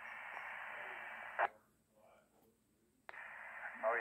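Speaker of a 2 m FM ham transceiver giving a steady hiss from an open channel that cuts off with a short click about a second and a half in as the other station unkeys, leaving near silence; about three seconds in another click and the hiss return as a station keys up again, just before speech resumes.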